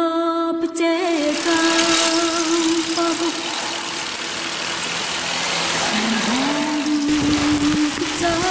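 Steady rushing wind and wet-road noise on a moving bicycle-mounted camera in the rain, beginning about a second in. Music with a long held note plays under it at the start, fades by about three seconds, and a new note rises in and holds near the end.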